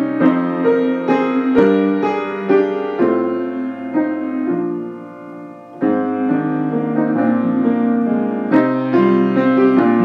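Slow, gentle keyboard music with sustained piano-like chords and melody. It softens about halfway through, then a new phrase comes in with a strong chord.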